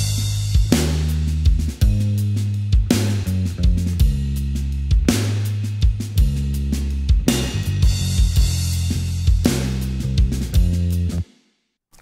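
Bass guitar and drum kit playing together in a mixed indie pop rock track, with held bass notes under steady kick and snare hits. The playback stops suddenly near the end.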